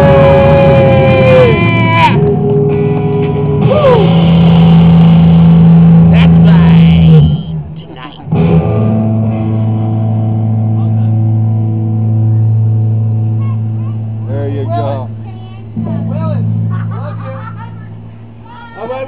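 White Stratocaster-style electric guitar played loud through a small amplifier: wavering, bent notes over held chords, a brief break about eight seconds in, then a long low chord left ringing and slowly fading. A man's voice breaks in over the ringing near the end.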